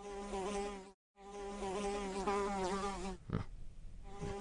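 Housefly buzzing from an animated film's sound effects, a wavering drone that breaks off for a moment about a second in and then resumes. A short low thump sounds a little after three seconds, and the buzz carries on after it.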